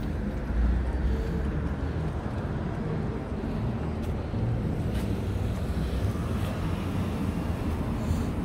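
Police SUV driving slowly past, a steady low engine and tyre rumble, with wind buffeting the microphone.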